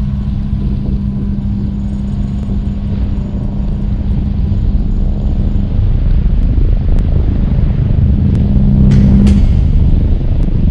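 A deep, steady rumble with a low hum, a cinematic logo sound effect that swells slowly and ends with a short swoosh, the hum cutting off near the end.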